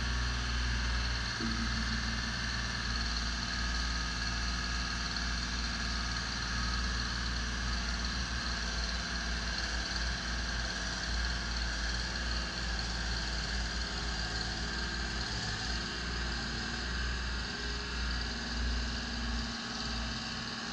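Genie Z-62/40 articulating boom lift's diesel engine running steadily under load as the boom is lowered and the machine drives away.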